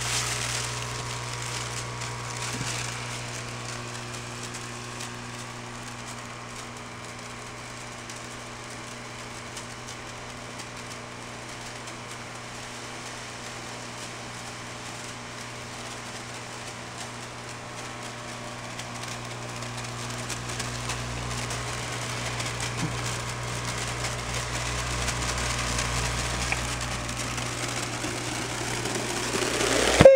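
Storz & Bickel Volcano Digit vaporizer's air pump running, blowing heated air up into its balloon bag as the bag fills. A steady hum that grows louder over the last third.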